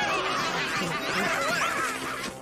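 Several voices laughing at once, with high, overlapping pitch glides.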